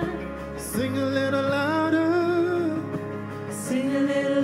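Live gospel worship song: a male voice sings long held phrases over the band's sustained chords, with the bass note changing about a second in.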